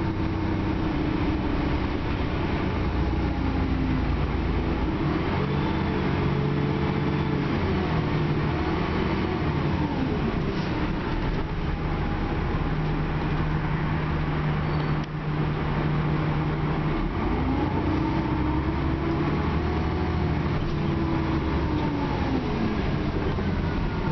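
Dennis Trident double-decker bus heard from inside the passenger cabin: a steady engine and drivetrain rumble with a whine that rises and falls twice as the bus speeds up and slows, over road noise.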